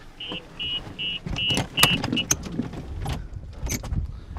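Golf cart's electronic warning beeper sounding about six short high beeps, a little over two a second, then stopping after about two seconds. Scattered knocks and rattles from the cart follow.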